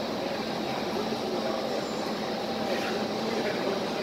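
Steady background hubbub of a busy food court: a constant hum with faint, distant chatter.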